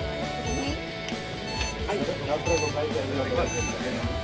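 Electronic orienteering start clock beeping, short high beeps about once a second, counting down to a competitor's start. Background music and voices run throughout.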